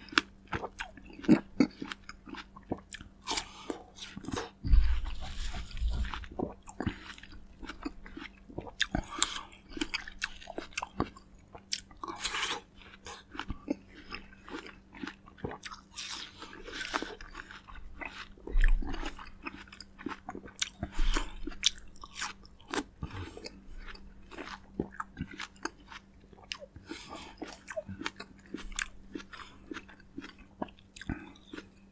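Close-miked eating of fresh fruit: crisp bites and wet chewing at an irregular pace, with a few low thuds about five and six seconds in and twice more later. A faint steady hum runs underneath.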